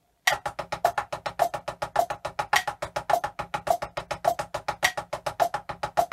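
Double stroke roll played with drumsticks on a practice pad muffled by a folded cloth, which deadens the rebound and makes the wrists work harder: fast, even strokes that start about a quarter second in. A metronome clicks on each beat at about 100 a minute.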